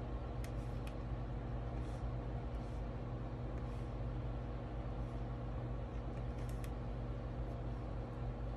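A steady low electrical or mechanical hum with a few faint light clicks scattered through it.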